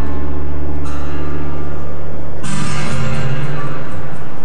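Live acoustic guitar music: a low chord is held and rings for about two and a half seconds, then a new, brighter strummed chord comes in.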